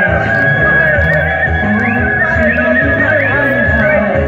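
Loud dance music with a steady bass beat and a high lead line. The lead holds one long note, then from about halfway in breaks into short upward swoops.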